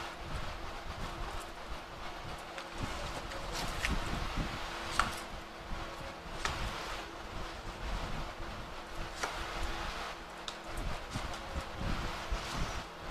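Tarot deck being shuffled and handled by hand: soft rustling of cards with a few light clicks scattered through.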